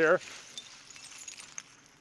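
Faint clinking and scraping of crushed bottle glass shards as gloved hands dig into a tote of the crushed glass.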